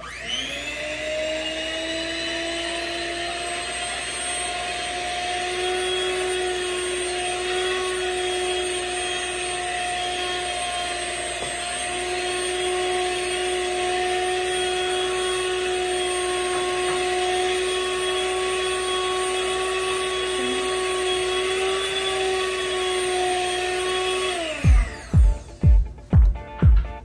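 Electric hand mixer running steadily with beaters in chocolate cake batter in a stainless steel bowl, its motor whine rising briefly as it starts. Near the end the motor winds down, its pitch falling as it stops.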